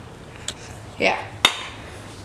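Two sharp knocks about a second apart, the second louder, from a scooter being picked up and handled.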